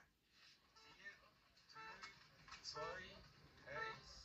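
Faint, brief speech from a television broadcast, heard through the TV's speaker in a room. Otherwise near silence.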